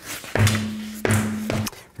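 A car wheel and tire set down on a shop floor: a few hollow thuds, with a low hum ringing on between them for about a second and a half.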